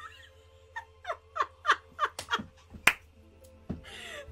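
Sound from the animated series playing: a run of about seven quick falling tones, one after another, then a sharp crack and a low thump.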